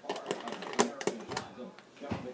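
A plastic thermostat base plate and screwdriver being handled as the plate is taken off the wall: several sharp clicks and rattles, the loudest about a second in.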